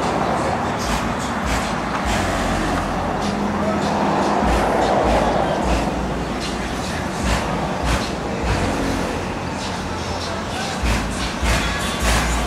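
Outdoor background of running cars, people talking at a distance and music with deep bass, with a few short knocks.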